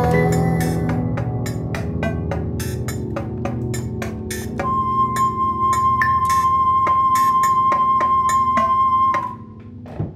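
A small band playing live comes to the end of a song: sustained low notes under a steady beat of sharp percussive clicks. A single high tone is held from about halfway, and the music stops about a second before the end.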